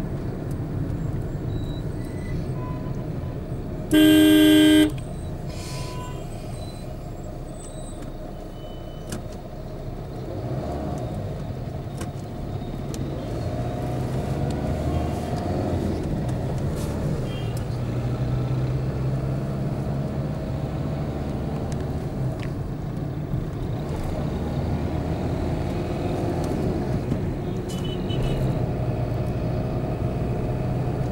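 City road traffic heard from a moving vehicle: steady engine and tyre rumble, with one loud vehicle horn honk lasting just under a second about four seconds in, and a few faint short honks from other traffic later on.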